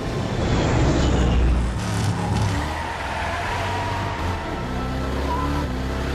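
Movie sound mix: a giant bomber's engines running with a deep, steady rumble as it takes off, with orchestral score music beneath.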